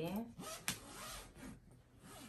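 Rustling and rubbing of a clear vinyl comforter storage bag being lifted and turned over by hand, with a single sharp click about two-thirds of a second in.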